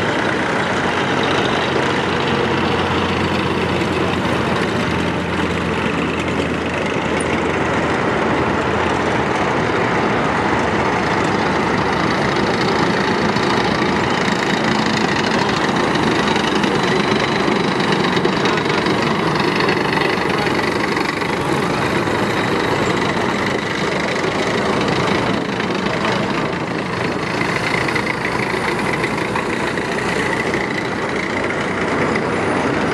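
Heavy military vehicles' engines running steadily as a column of tracked armoured vehicles and a wheeled missile-launcher truck drives slowly past, a continuous loud drone.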